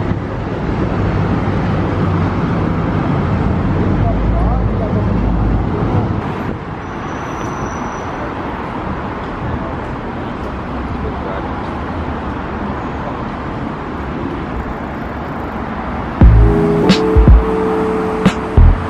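Steady outdoor noise of traffic and people's voices, with a heavier low rumble in the first six seconds. Loud background music with a beat comes in near the end.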